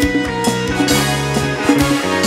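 A live band playing, with electric guitar, keyboard and drum kit: held notes over a steady drum beat.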